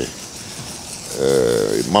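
A man's voice: a short pause, then a drawn-out hesitation sound before he goes on speaking.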